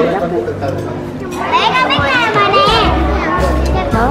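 Children's voices talking and calling out over background music with a steady low bass line; a high child's voice is loudest about halfway through.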